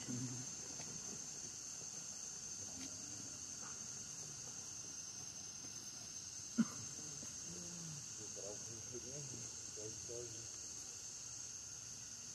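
A steady high-pitched drone of insects chirring, with faint voices now and then and one sharp click a little past halfway.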